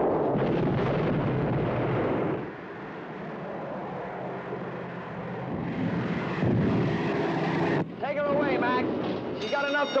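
Film battle sound effects: a dense rumble of gunfire and explosions that drops off sharply after about two seconds to a quieter continuing rumble, with voices near the end.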